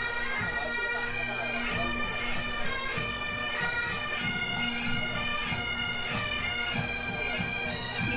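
Pipe band playing a march: bagpipes sounding a melody over a steady drone, with regular drum beats underneath.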